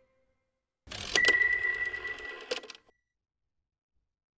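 Short logo sound effect: about a second in, a brief swell of noise, then a sharp click that sets off a ringing high tone, which fades with a second click near its end. The sound lasts under two seconds.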